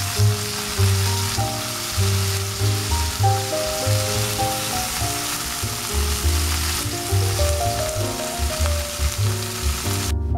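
Pork slices sizzling in hot oil in a nonstick frying pan, a steady frying hiss that stops at the very end. Background music with a pulsing bass line plays throughout.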